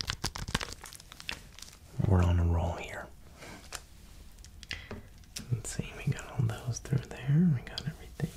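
Plastic Kit Kat wrapper crinkling as it is handled close to the microphone, a quick run of crackles in the first second. A held hum about two seconds in and soft vocal sounds near the end.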